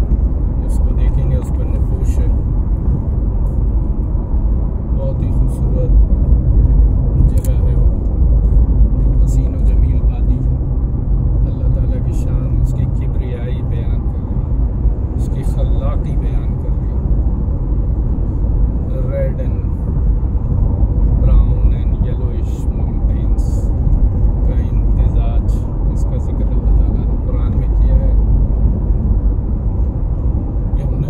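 Steady low rumble of a car travelling along a highway, with faint intermittent voices and short clicks over it.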